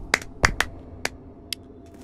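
A few sharp finger snaps, about five, coming unevenly in the first second and a half, then quiet.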